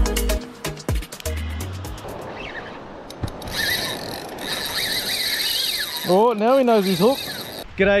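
Spinning reel's drag screaming as line is pulled off, a steady high-pitched rattle starting about three seconds in and cutting off near the end, with a man's wavering whoop over it about six seconds in. Music fades out over the first two seconds.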